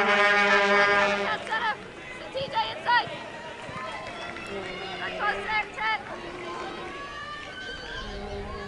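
Shouted calls from soccer players and the bench during a stoppage in play. A long held call at the start is the loudest thing, followed by a few short shouts over quiet stadium ambience.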